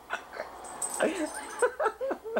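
A dog whimpering in short, wavering, high whines, most of them in the second half.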